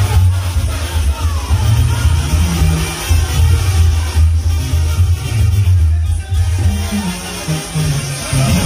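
Loud live band music over a concert sound system, with a heavy bass line.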